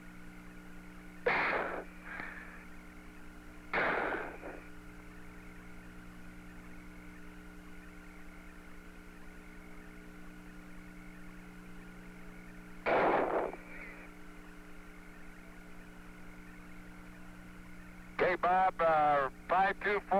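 Apollo lunar-surface radio link carrying a steady hum with several fixed tones, broken by three short bursts of noise, about a second, four seconds and thirteen seconds in. A voice comes in over the link near the end.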